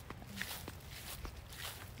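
Soft, irregular footsteps walking across a mown grass lawn, a few faint steps over low rumble.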